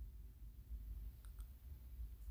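Quiet room tone with a low hum and two faint clicks in quick succession a little past halfway.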